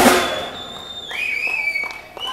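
Live rock band on stage: a loud crash-like hit at the start that fades over about half a second, then thin high held tones that drop in pitch about a second in and hold there.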